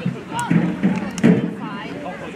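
Several voices calling out across a football pitch, a low adult voice among higher children's shouts, with a couple of sharp knocks.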